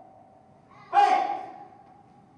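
A man's single short shouted vocal exclamation, like a loud gasp, about a second in, dying away over half a second in a reverberant church hall, over a faint steady tone.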